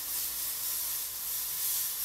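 Airbrush spraying paint: a steady hiss of compressed air through the nozzle.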